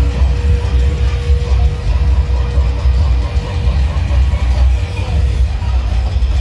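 Loud dance music with heavy bass played through a truck-mounted DJ sound system.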